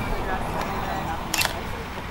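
A DSLR camera's shutter firing once, a short sharp clack about one and a half seconds in.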